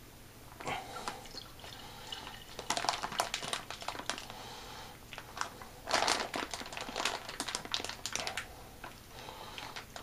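Plastic F-pack pouch crinkling in several irregular bursts as it is squeezed and tipped to empty its contents into a carboy of wine.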